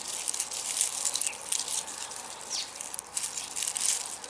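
Strawberry leaves and stems being pulled and snapped off a plant by hand: a run of crackling, rustling clicks.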